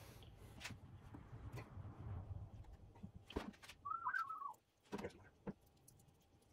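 Faint handling sounds of a plastic glue bottle being worked over a wooden frame: a few light clicks and taps, with one short warbling chirp about four seconds in.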